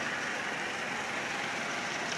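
A 2004 Dodge Stratus SE sedan rolling slowly backward under its own power: a steady, even hiss of the car's running and tyre noise, with no revving.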